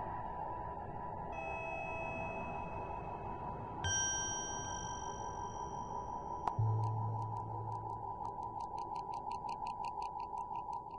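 Ambient electronic synthesizer music. A steady drone has sustained high tones coming in over it, and a fast, evenly pulsing sequence starts about two-thirds of the way through.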